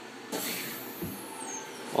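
Handling noise from the recording phone being swung around: a soft rushing hiss in two swells.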